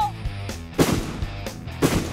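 Two heavy rifle shots about a second apart, each a sharp crack with a short echoing tail, from a large scoped, bipod-mounted rifle fired prone. Background music runs underneath.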